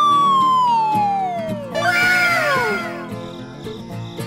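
Background music with a cartoon-style sound effect over it: one long descending whistle-like glide lasting about two seconds, then a shorter falling tone with a burst of hiss.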